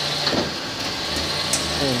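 2008 Chevrolet Impala engine running steadily with the transmission in reverse, turning the raised front wheel; the engine is said to be bad.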